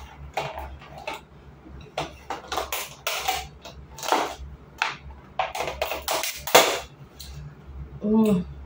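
Thin clear plastic clamshell cake container being handled and opened, its lid giving irregular crackles and clicks.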